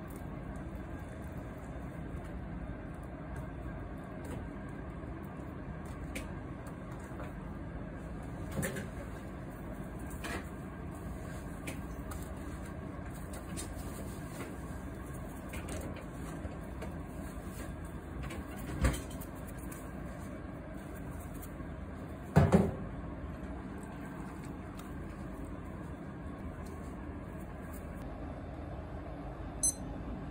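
Steady low background rumble with a few soft knocks and clicks from hands laying fish fillets on a bamboo tray and salting them. The loudest is a double knock about three-quarters of the way in, and a sharp click comes just before the end.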